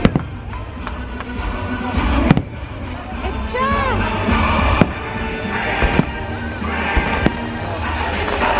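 Fireworks show: sharp firework bangs every second or two over a loud show soundtrack of music and voices, with tones that glide up and back down.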